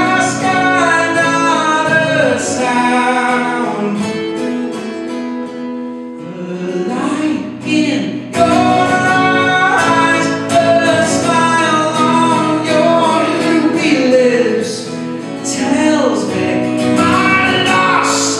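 A man singing over a strummed acoustic guitar in a live performance. The sound eases into a quieter stretch around six seconds in, then comes back in full about eight seconds in.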